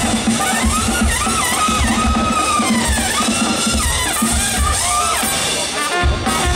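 Live brass band music: a trumpet plays a bending, sliding melody over marching drums, with bass drum beats and snare, and a low note repeated in rhythm underneath.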